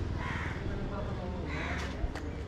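A crow cawing twice, the caws about a second and a half apart, over a low steady street background.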